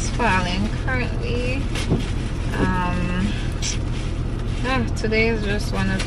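Steady low hum inside a car cabin, with a woman's voice in short bursts over it and one drawn-out vocal sound near the middle.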